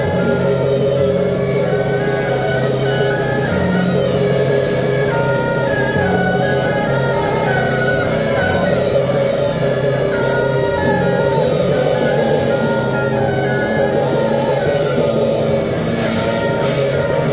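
Temple procession band playing: a reedy suona-style horn melody over sustained lower tones, with steady gong and cymbal strikes keeping time.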